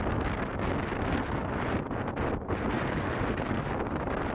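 Wind buffeting the camera microphone: a steady, rumbling noise that eases briefly about two and a half seconds in.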